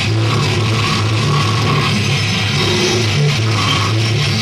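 A brutal death metal band playing live: distorted electric guitars, bass and drums in a loud, dense, unbroken wall of sound, with low guitar notes shifting in pitch.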